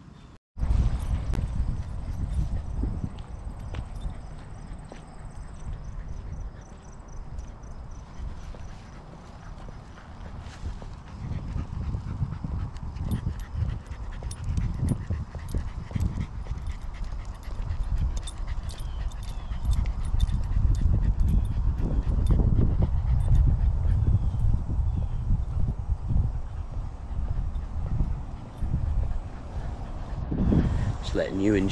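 Outdoor walking sound with a low, fluctuating rumble of wind on the microphone and a cocker spaniel panting in the heat.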